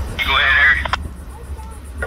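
Railroad radio scanner: a short burst of squelch noise and garbled transmission, with the sound cut off sharply at the top like a radio's, ending in a click just under a second in. A steady low rumble runs underneath.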